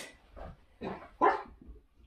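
A small dog barking, three short sharp barks in quick succession.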